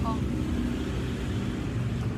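A motor vehicle's engine running close by: a steady low hum.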